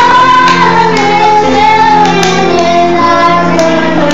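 A group of children singing a Christmas carol together into handheld microphones, in long held notes.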